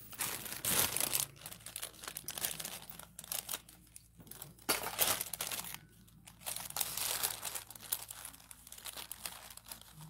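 Crinkling and rustling of paper tickets handled and rummaged through by hand, in irregular bursts.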